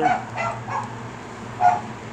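A dog yipping: a few short, high-pitched yips, the loudest near the end.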